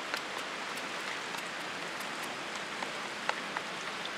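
Steady rushing hiss of water in the background, with a few faint, short wet clicks as pieces of chicken are squeezed and mixed by hand in a bowl of marinade.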